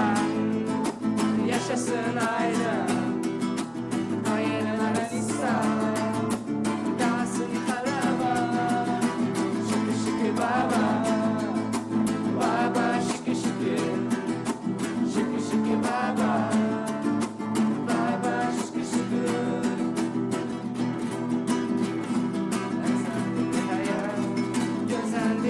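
Two acoustic guitars, a nylon-string classical guitar and a steel-string acoustic, strummed together in a steady rhythm, with a voice singing along.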